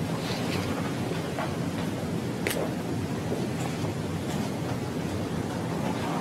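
Steady hiss of the courtroom audio feed, broken by a few faint clicks and taps, the clearest about two and a half seconds in.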